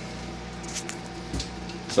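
Steady low hum with a few faint rustles and a soft bump about a second and a half in.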